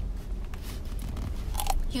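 Someone biting into and chewing a fried snack, with a few short crunches near the end.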